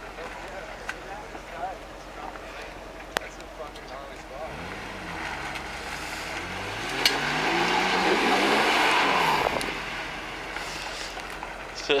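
Jeep Wrangler engine revving under load in mud, its pitch rising and falling, starting about four seconds in and loudest toward the middle with a rush of noise, then easing back down near the end; the Jeep is working to back off a spot where it was hung up on its rock guard.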